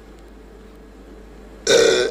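Steady low hum and hiss of background room tone. Near the end a man's voice breaks in with a drawn-out "uh".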